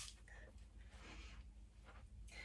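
Near silence: quiet room tone with faint rustling of cloth being handled.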